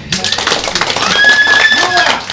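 Club audience applauding and cheering as an acoustic song finishes, with a shrill whistle held for about a second past the middle.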